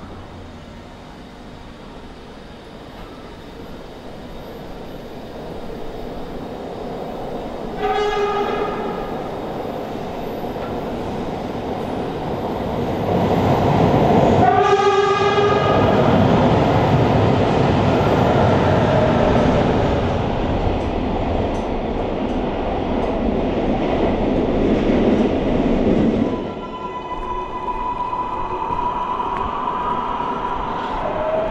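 Metro rapid-transit train approaching and passing close by a platform, growing steadily louder, with two short horn blasts about six seconds apart. Near the end the loud passing noise drops away, leaving a steady whine that rises slightly.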